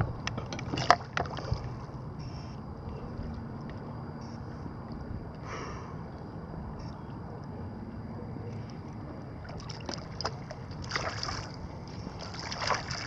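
Water lapping and sloshing, with a few sharp knocks in the first second or so and splashing near the end.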